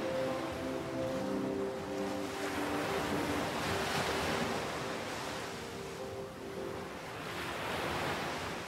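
Ocean surf washing in, swelling to a peak about halfway through and building again near the end, under soft held music chords.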